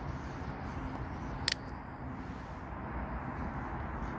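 Small wood fire burning in a tin-can stove, a steady low rumble with one sharp crack about a second and a half in.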